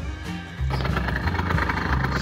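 Background music, joined a little after half a second in by the steady running of a small engine on a Heuraupe hay machine.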